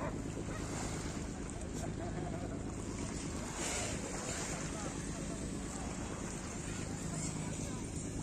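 Seaside ambience: wind on the microphone and gentle sea, over a steady low hum.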